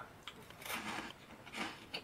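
Mouth chewing crispy puffed Meiji Curry Curls snacks, several soft crunches.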